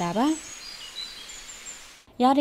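A man's speech breaks off in the first half-second, then outdoor ambience with several short, faint, high-pitched bird chirps and whistles.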